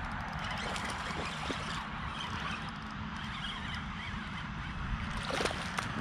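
Steady low rumble of wind on the microphone while a small largemouth bass is reeled in and landed, with a few faint clicks about five seconds in.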